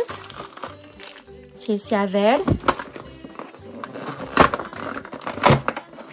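Paper crinkling and crackling as fingers push through the tissue-paper-lined, perforated cardboard windows of a toy box, with background music.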